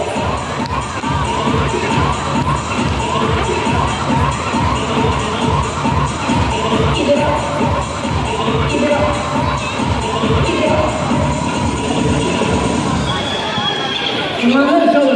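A large crowd of children shouting and cheering together, a loud steady din. A short rising call repeats about twice a second through most of it.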